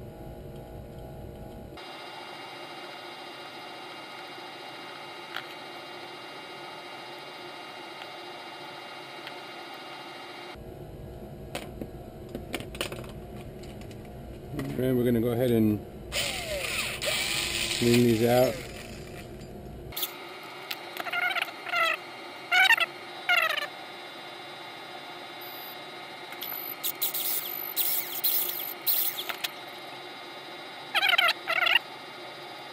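Workbench sounds: a low steady background with small handling clicks, then a cordless drill running briefly, for about two seconds in the middle, reaming holes in a 3D-printed plastic frame part. Short voice-like sounds come around it, and higher-pitched chattering ones follow in the second half.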